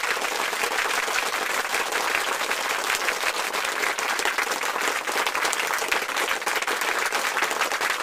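A crowd applauding steadily, many hands clapping in a dense patter. It cuts in abruptly out of silence.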